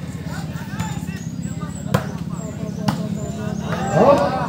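Takraw ball kicked during a rally: two sharp smacks, about two and three seconds in, over steady crowd chatter.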